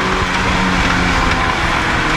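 Rally car's engine running at a steady pitch, heard from inside the cabin over heavy road and tyre noise; the sound grows louder in the first half second.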